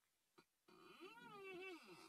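Near silence, then about a second of a faint, drawn-out pitched call that rises and falls in pitch.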